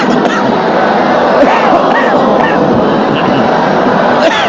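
Many voices reciting a Quranic verse together in a drawn-out, melodic tajweed chant, the pitches of the voices overlapping.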